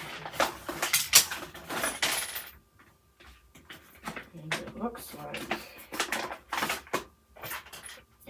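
Small plastic diamond-painting tools clicking and clattering as they are taken out of a tool-kit pouch and set down on a table, with the pouch rustling. The handling stops briefly about two and a half seconds in, then starts again.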